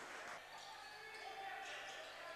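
Faint sound of a basketball being bounced on a hardwood court in an arena hall.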